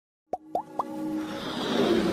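Animated logo intro sound effects: three quick rising plops about a quarter second apart, then a swelling wash of sound that builds steadily louder.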